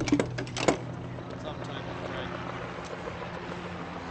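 A quick run of sharp clicks and knocks in the first second, over a steady low hum, followed by an indistinct background murmur.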